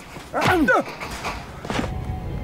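Film soundtrack of two men fighting: a loud strained cry that rises and falls about half a second in, then a shorter grunt near the end, over a low rumble.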